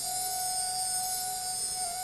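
A single steady tone held at one pitch, pure with hardly any overtones, over the low hiss of the sound system.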